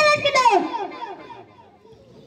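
A child's voice speaking a line that trails off in a long falling pitch about halfway through, then fades away.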